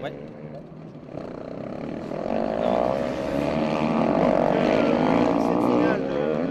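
Racing motorcycle engine on a snow track, growing louder from about a second in as the bike comes closer and stays loud near the end.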